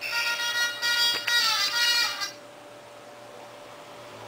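A steady electronic buzzer tone sounds for about two seconds, with a brief break or two, then stops and leaves only a faint hum.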